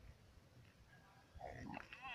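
Near silence, then a little past halfway a person's low, strained throat sounds begin and grow louder.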